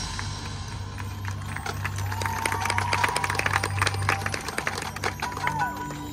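High school marching band playing a soft passage of its field show: held low notes with a quick stream of light taps over them and a high held tone in the middle.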